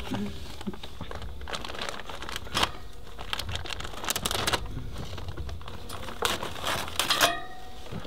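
Black barbecue cover crinkling and crackling as it is handled and a knife saws a hole through it, in irregular short scrapes and crackles.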